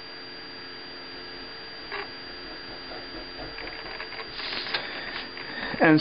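A felt-tip marker drawing a dashed line on paper along a plastic ruler: a series of short scratchy strokes, mostly in the second half, over a faint steady hum.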